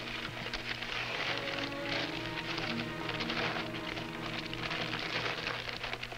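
Wrapping and tissue paper rustling and crackling as a present is unwrapped, over soft background music.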